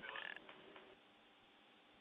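Near silence: a faint steady hiss of the broadcast audio. In the first second a brief, raspy tail of the flight voice loop fades out, carrying on from the last radio call.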